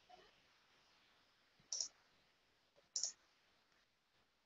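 Two short, sharp clicks a little over a second apart, as of a computer mouse being clicked, against near silence.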